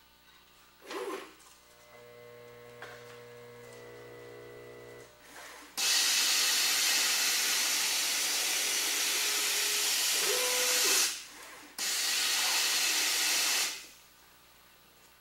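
Automated gravimetric powder filler at work. A short knock about a second in is followed by a few seconds of steady motor hum, then a loud steady hiss while powder is dispensed into a cup. The hiss breaks off for about half a second and resumes, then stops just before the end.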